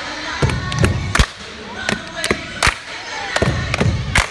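Sharp hand claps close to the microphone, about eight of them at uneven intervals, the loudest a little after one second in, with crowd voices and music in the background.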